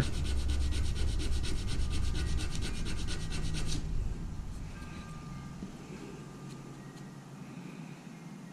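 A small wooden piece rubbed back and forth by hand on a sheet of sandpaper laid flat on the bench, in rapid, even strokes that stop about four seconds in. The edge is being sanded down so that a tapered joint lines up.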